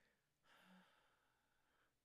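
Near silence, with one faint breath from a man starting about half a second in and lasting just over a second.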